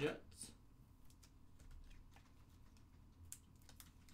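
Faint, irregular clicks of typing on a computer keyboard.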